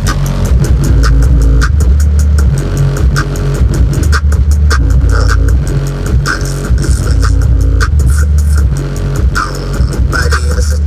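Music with a heavy bass line played loud through car subwoofers driven by a Cerwin Vega H1500.1D mono amplifier. Deep bass notes shift under a steady beat of sharp ticks, with the amp delivering about 320 watts into a 2-ohm load.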